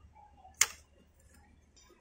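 A single sharp click about half a second in, fading quickly, then a faint hush.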